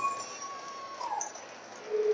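Faint crowd noise in a hockey arena just after a goal, with a thin high note held for about a second that dips at the end.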